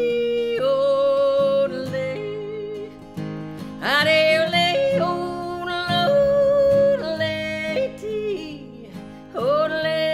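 Woman singing long held notes over her own strummed acoustic guitar, with the voice swooping up into the note at the start of each phrase.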